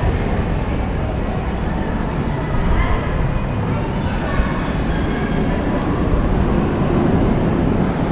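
Busy pedestrian walkway ambience: a steady low rumble with indistinct voices of people passing by.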